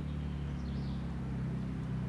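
A steady low hum with a faint hiss beneath it.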